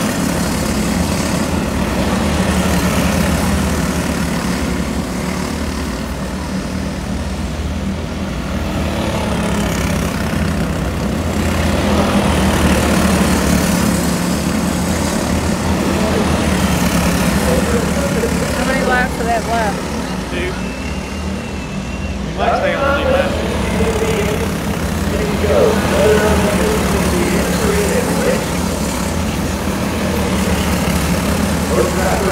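Engines of several small race cars running steadily as they lap a dirt oval, the sound rising and falling a little as the pack goes around.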